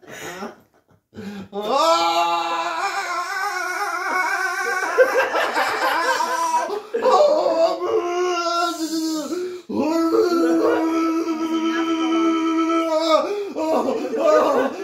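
A man's long, drawn-out cries, several held wails at a steady high pitch with short breaks between them. He is reacting to the electric pulses of a labour-pain simulator.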